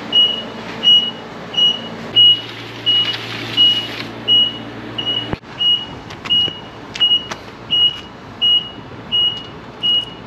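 Forklift's warning alarm beeping steadily: one high-pitched beep about every three quarters of a second, over a low motor hum. A few sharp clicks come in the second half.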